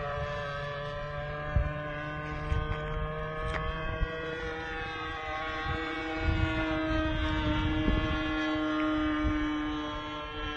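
O.S. Max .50 two-stroke glow engine of an RC Extra 300S model plane running in flight, a steady buzz whose pitch sinks and then rises again as the plane passes, a little louder from about six seconds in. Wind rumbles on the microphone underneath.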